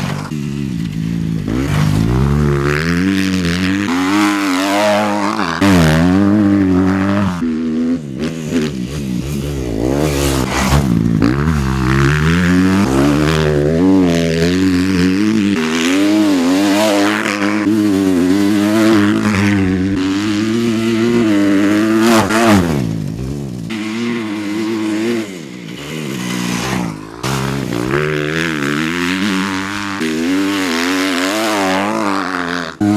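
Kawasaki motocross bike's engine revving hard through a lap of a dirt track. The pitch climbs and drops over and over as the rider works the throttle and shifts through jumps and corners, easing off briefly near the end.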